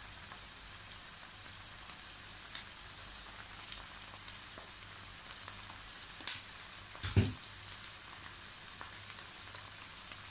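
Vegetables in tomato sauce frying in a granite-coated pan over a gas flame, a steady hiss. A sharp click about six seconds in and a short low thud about a second later.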